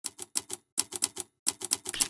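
A run of about fourteen sharp, rapid clicks in three quick bursts, typewriter-like key strikes used as the sound effect of an animated logo sting. Music starts right at the end.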